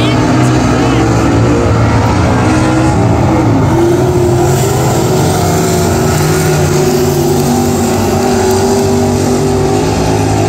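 Several stock car racing engines running hard during a feature race, a loud continuous mix, with one engine's pitch rising about four seconds in as it accelerates.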